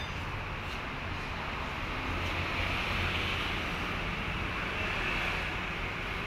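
Steady low rumble of an engine running in the background, with an even hiss above it and no knocks or tool strikes.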